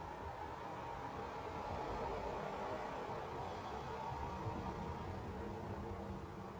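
Steady low background hiss with a faint hum underneath; no distinct event stands out.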